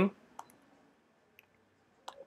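A few faint, sharp computer clicks against near-silent room tone: a pair close together about half a second in, then one more about a second later, made while toggling the before/after view in Camera Raw. A spoken word ends right at the start.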